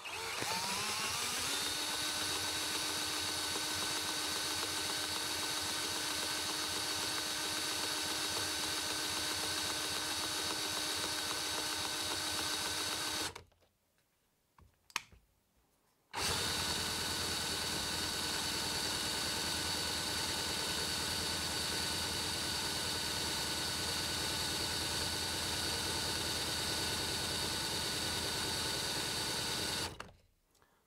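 Cordless drill spinning a miniature Cison V-twin model engine over by its crankshaft in a start attempt. It runs in two long, steady runs with a short pause and a click between them. The engine does not fire because no fuel is reaching it.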